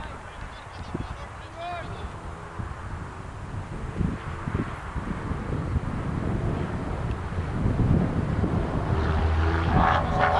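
Wind rumbling on the microphone outdoors, growing louder toward the end, with faint distant calls; a louder pitched call comes near the end.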